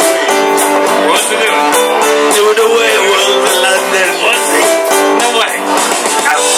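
Karaoke backing track with strummed guitar playing loudly through a bar PA, with men singing along into microphones. The sound is thin, with almost no bass.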